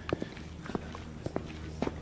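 Footsteps on concrete pavement at a steady walking pace, a short scuff or tap about every half second or so.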